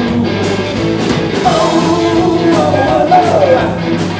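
Live rock band playing with electric guitars, bass, acoustic guitar and a drum kit, cymbal and drum hits running through it. A lead line slides up and down in pitch through the middle.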